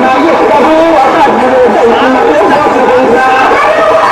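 Loud, continuous voices with chatter, the pitch bending and at times held on long notes; no rickshaw engine stands out.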